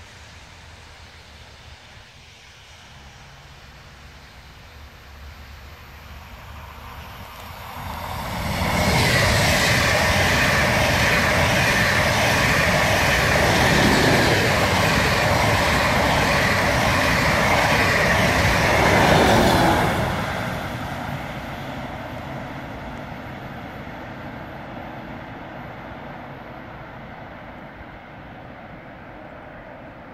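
ICE 2 high-speed electric train passing at speed: the sound builds over a few seconds as it approaches, stays loud and steady for about eleven seconds as the coaches go by, then fades gradually as it recedes.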